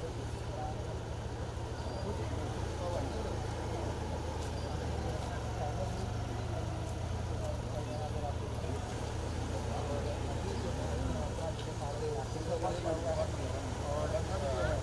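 Motor vehicle engine running steadily at low revs, with scattered voices of people around it.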